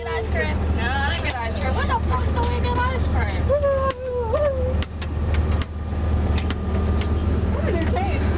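Steady low engine and road drone inside a moving coach bus, with passengers' voices over it in the first half, some held and sung. A few light clicks come between about five and seven seconds in.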